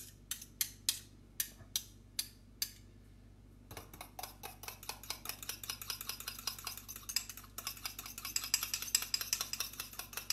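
Metal fork clinking against a small ceramic bowl while mixing a creamy herb sauce: separate clinks about twice a second at first, then, from about four seconds in, fast continuous whisking with rapid clinks and scraping.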